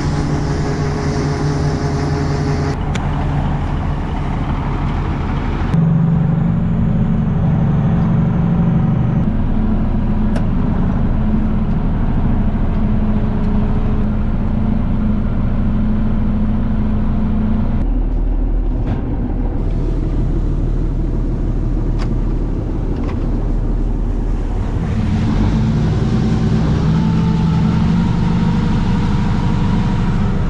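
Diesel engines of harvest machinery running steadily and loudly, in several short cuts: a John Deere combine working in the field, then a tractor heard from inside its cab.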